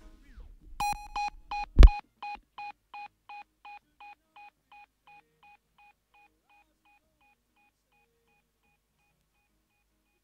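An electronic beep fed through an echo delay, repeating about three times a second and fading away over several seconds, a typical dub sound-system effect. A single loud thump with deep bass lands about two seconds in and is the loudest sound.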